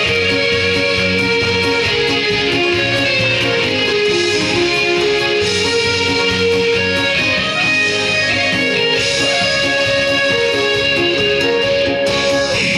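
Instrumental interlude of a trot song's backing track, with guitar over a steady accompaniment and no singing.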